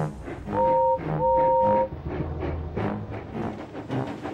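Steam locomotive whistle blowing two steady blasts, a short one then a longer one, over background music.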